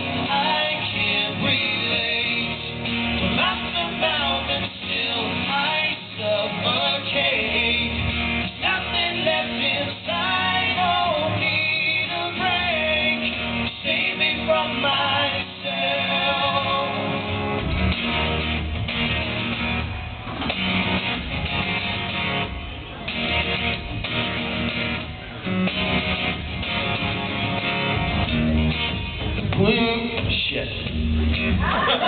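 Two acoustic guitars played together live, strummed and picked, in the song's instrumental break between verses.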